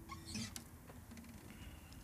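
The last ringing note of an acoustic guitar is cut off just after the start, then faint scratching and a few small clicks of the guitar being handled.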